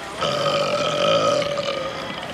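A man's long, drawn-out burp lasting about a second and a half, held at a steady pitch.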